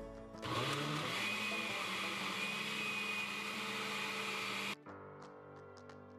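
Oster countertop blender running for about four seconds, blending a yogurt smoothie with ice. The motor spins up with a rising hum, runs with a steady high whine, then stops abruptly.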